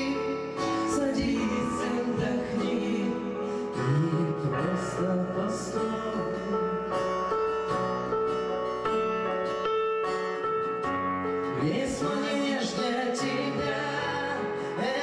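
Live band music: acoustic and electric guitars with keyboards playing a slow song, with held chords and notes throughout.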